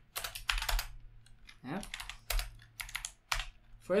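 Typing on a computer keyboard: irregular clusters of sharp key clicks.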